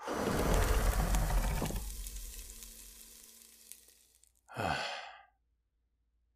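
A fire-breath sound effect: a sudden rush of flame noise with a deep rumble, fading away over about four seconds. About four and a half seconds in, a man's voice lets out a short sigh.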